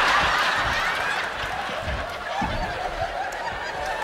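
A theatre audience laughing heartily together at a punchline. The laughter is loudest at the start and slowly dies down.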